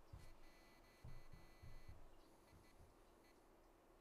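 Near silence: room tone, with a faint high steady tone and a few soft low thumps in the first two seconds.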